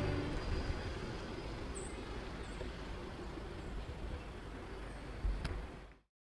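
Outdoor ambience: a steady, even rumble-and-hiss with a few short faint high chirps. A single click comes near the end, and the sound then fades out to silence.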